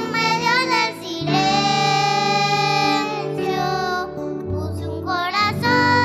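Two young girls singing a worship song into microphones, accompanied by electric keyboard and bass guitar; a long held note about a second in, then shorter sung phrases.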